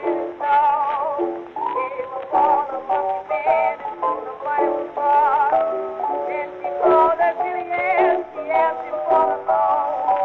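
A 1920s blues record playing: a melody line with wavering vibrato over a steady accompaniment. The sound is thin and narrow, with no deep bass and no bright top, as is typical of a mid-1920s 78 rpm recording.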